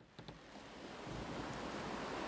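Rushing sea waves and wind, swelling up out of silence over about a second and then holding steady, with a few faint high ticks near the start.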